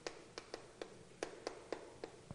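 Chalk striking and stroking a chalkboard as characters are written: a run of faint, sharp clicks, about three a second at an uneven pace.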